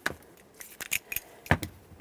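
Several light clicks and taps of metal tools being handled, a long socket extension with a 6mm Allen-head socket, the sharpest tap about one and a half seconds in.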